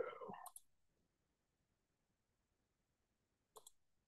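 A computer mouse clicking twice in quick succession near the end, a double click, with one click about half a second in; otherwise near silence.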